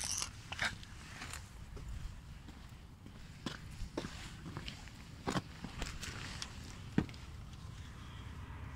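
Handling noise from a handheld phone being moved about: irregular sharp clicks and short scrapes over a steady low rumble.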